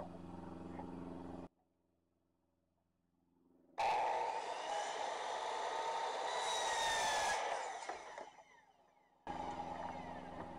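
Hitachi compound miter saw switched on a little under four seconds in, running with a steady whine as its blade cuts a 45-degree miter through a trim board. It then winds down and stops about eight seconds in.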